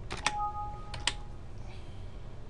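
Computer keyboard keys pressed a few times in two quick pairs while a keyboard shortcut fails to work, with a steady electronic alert beep about a second long sounding between them.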